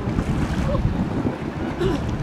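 Wind buffeting the microphone, a dense low rumble, with a tug passing close by on the river.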